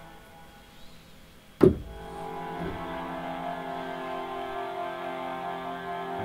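Synthesizer notes held on and sustaining steadily: a stuck note, its note-off message not getting through the cheap USB-to-MIDI adapter. About a second and a half in, a sharp hit, the loudest moment, starts new tones that also keep ringing.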